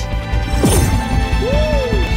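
Anime soundtrack music with a sudden crash-like impact sound effect about two-thirds of a second in, trailing off in a falling sweep; a short tone rises and falls near the end.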